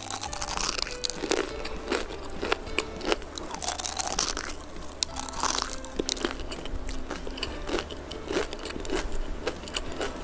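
Close-miked crunching of a crisp Milo-flavoured lace crepe roll (kuih jaring sarang laba-laba) as it is bitten and chewed: a quick run of sharp crackles. The crunch is the sign of its crisp, non-soft texture.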